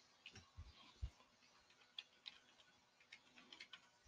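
Faint, irregular key clicks from a computer keyboard as an e-mail address is typed, a few strokes landing with a soft low thump.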